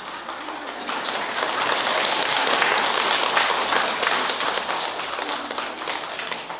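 Audience applauding, a dense patter of many hands clapping that swells to its loudest in the middle and fades near the end.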